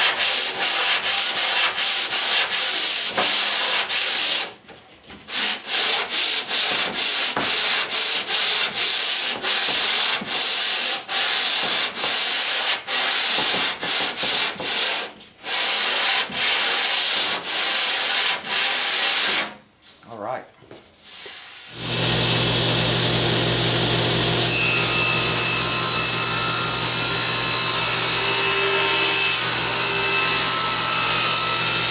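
Hand scraper scraping dried glue off a plywood edge in rapid rasping strokes, about two a second, with a short pause about four seconds in. About 22 seconds in it gives way to a steady low machine hum.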